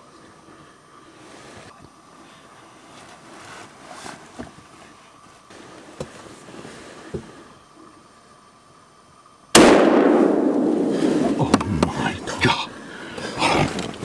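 A single hunting-rifle shot about nine and a half seconds in, loud and sudden, trailing off over a second or two. The rifle is fired at a whitetail buck. Before it there is only quiet forest with a few faint clicks. Afterwards come rustling handling noises and excited voices.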